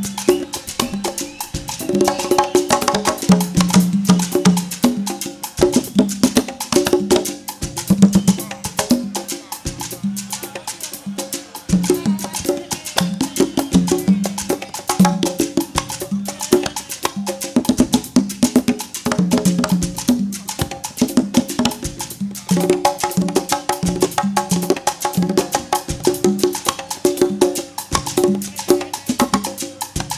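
Conga drum duet: two players on a set of four congas playing fast, dense strokes, with several drum pitches answering one another.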